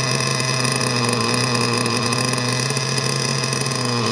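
LRP ZR.32X two-stroke nitro RC engine idling steadily on its first run with a new carburettor, still settling in.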